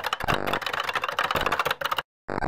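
Rapid, dense clicking sound effect like fast computer typing or data chatter, which cuts off suddenly at the end.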